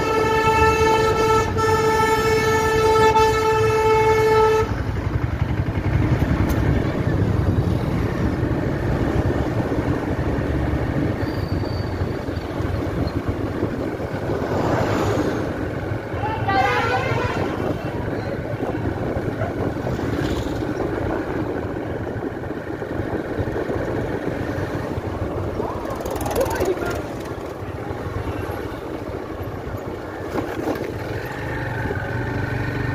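A vehicle horn sounds one long, steady note for the first four and a half seconds, then cuts off. Under it, and for the rest of the time, a motorcycle engine runs with steady wind and road noise as the bike is ridden along.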